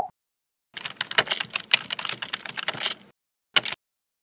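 Computer keyboard typing as a sound effect: a fast run of key clicks lasting about two seconds, then a short burst of clicks near the end.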